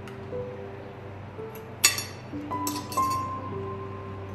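Metal cutlery clinking against tableware: one sharp clink about two seconds in, then a few more shortly after, over soft background music with a slow melody.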